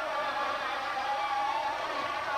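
Studio audience applauding and cheering, a steady dense wash of sound.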